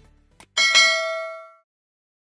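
A faint mouse-click sound effect, then a bright bell ding that rings out and fades over about a second: the notification-bell sound of a subscribe-button animation.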